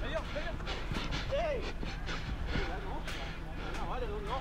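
Players' voices calling out across an outdoor football pitch, in short scattered calls over a steady low hum.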